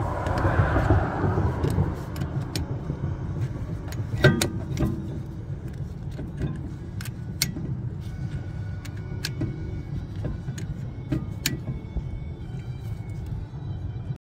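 Irregular metal clicks and clinks from a wrench working the screw of a disc brake caliper piston tool, pressing a rear caliper piston back into its bore. A cluster of louder clanks comes about four seconds in. A steady low rumble runs underneath.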